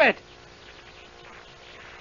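A man's voice ends on a word just as the pause begins, then only the steady hiss and faint buzzing hum of an old radio broadcast recording.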